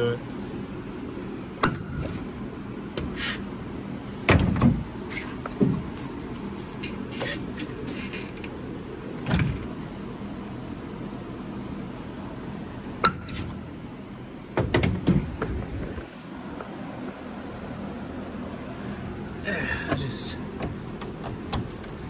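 Heavy hammer striking a wooden 4x4 block braced against a car's dented body panel from inside the trunk, knocking the dent out. The blows are irregular, with pauses between them and some coming in quick clusters.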